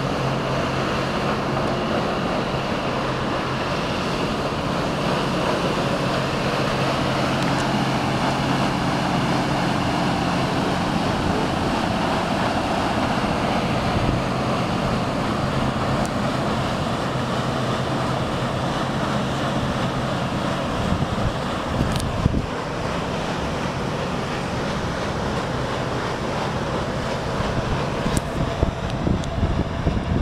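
Paddlewheel showboat passing below: a steady low hum under a constant rushing wash of wind and churning water. Wind buffets the microphone unevenly near the end.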